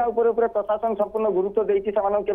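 Only speech: a man talking steadily in Odia.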